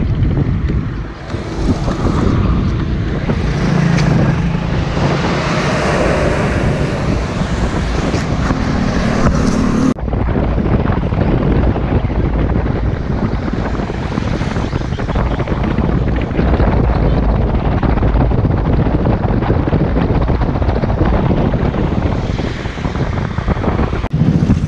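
Wind buffeting the microphone, a steady heavy rumble that changes abruptly about ten seconds in.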